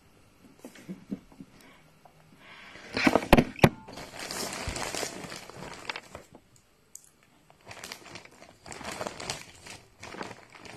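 Clear plastic bag crinkling as a hand rummages through dried herbs inside it and pulls a piece out. The rustling comes in bursts, loudest about three seconds in, with a couple of sharp cracks.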